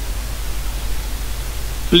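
Steady hiss with a low hum underneath: the recording's own background noise, fairly loud, with the narrator's voice coming back in right at the end.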